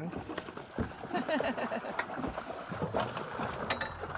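An arrowed fish splashing at the surface beside the boat as it is pulled in on the bowfishing line, with a few sharp clicks.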